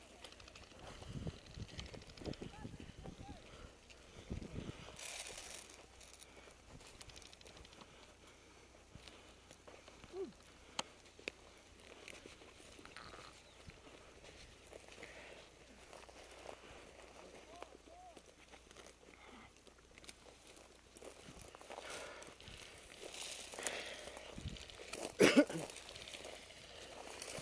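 Footsteps and rustling of dry brush with gear knocking, close to a body-worn camera as the wearer walks through scrub; a short laugh near the end.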